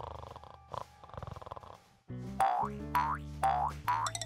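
A soft, fast rattling snore that fades away over the first two seconds, then, after a brief hush, playful comic music with quick falling, boing-like slides.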